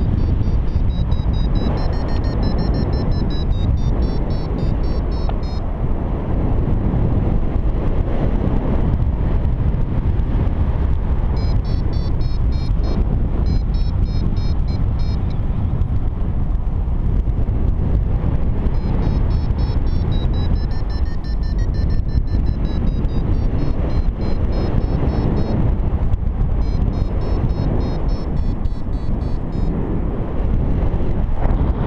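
Strong, steady wind rush on the microphone in flight, with a paragliding variometer's rapid short beeps coming in four spells, their pitch rising and falling: the climb tone that signals lift in a thermal.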